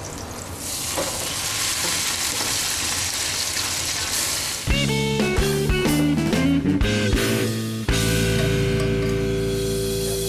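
Butter sizzling and frying in a pan as boiled tortellini are added. About halfway through, music with guitar and a beat comes in and takes over.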